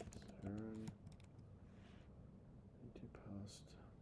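A few quick keystrokes on a computer keyboard, typing letters into an online crossword grid, with a faint mumble under the breath.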